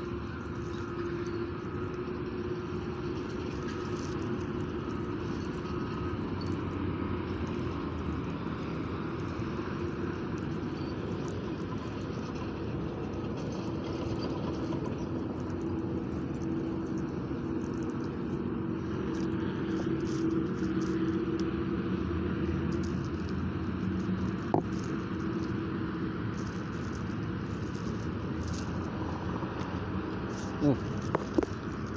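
Steady rumble of distant road traffic with an engine hum wavering in pitch through it, and one sharp click late on.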